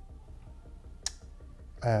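A single short, sharp click about halfway through, over a low steady background hum.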